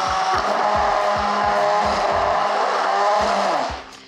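Immersion blender motor running steadily in a tall cup, puréeing a thick mix of banana, avocado and green tea; it cuts off near the end.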